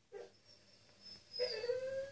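Staffordshire bull terrier crying: a brief whimper right at the start, then a longer, louder drawn-out whine of steady pitch in the second half. It is the anxious crying of a dog that thinks it has been left alone.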